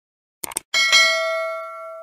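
Subscribe-button sound effect: a quick mouse click, then a notification-bell ding struck twice in quick succession, ringing with several clear tones as it fades.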